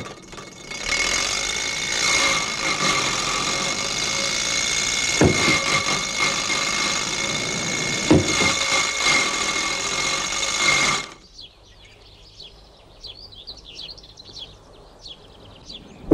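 A small vintage open car's engine runs with a steady, fairly high-pitched note for about ten seconds, with two knocks partway through. It cuts off abruptly, and faint bird chirps follow.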